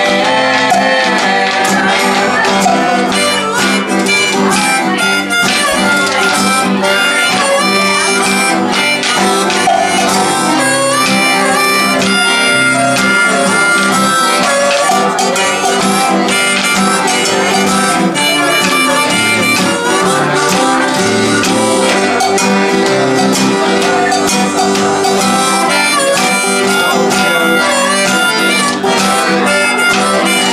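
Live blues-folk trio playing an instrumental passage: harmonica lead over accordion and strummed acoustic guitar, with a steady beat from percussion struck with sticks.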